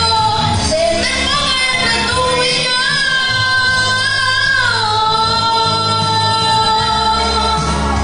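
A woman singing a religious song through a microphone and sound system over a steady instrumental accompaniment, holding long notes with vibrato; about halfway through, a held note steps down in pitch.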